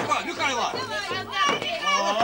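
Voices of children and adults talking and calling out over one another.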